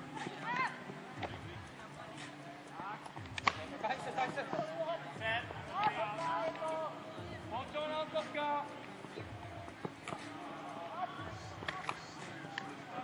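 Several people's voices talking and calling out, too indistinct for words to be made out, with a single sharp clap about three and a half seconds in.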